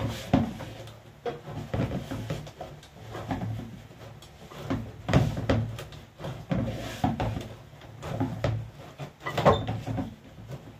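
Flour dough being kneaded by hand in a plastic bowl on a stainless steel counter: irregular thumps and knocks, about one a second, as the hands push the dough and the bowl shifts on the metal, over a low steady hum.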